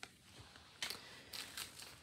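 Faint crinkling and rustling of a small clear plastic zip bag being handled and set down, a few soft crackles starting about a second in.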